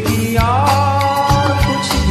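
A Bollywood song with a steady drum beat, sung as a vocal cover over a backing track. About half a second in, a voice slides up into one long held note.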